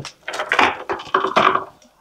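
Plastic packaging and HDPE chair parts being handled and lifted out of a box: rustling with light knocks, lasting about a second and a half.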